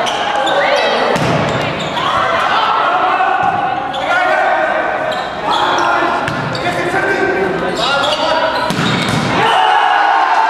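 Volleyball rally in a gymnasium: the ball is struck with sharp thuds several times, under loud shouting from players and spectators, echoing in the hall.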